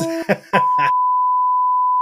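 A TV test-pattern tone: a single steady, high-pitched beep that starts about half a second in and holds unchanged. It follows a few clipped syllables of speech. It is the classic off-air test-card signal, cut in as a 'technical difficulties' gag.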